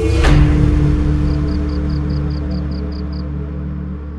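A large gamelan gong struck once about a quarter second in, its deep hum ringing on with a slow wobble and a steady tone above, fading gradually as a piece of Javanese gamelan music closes.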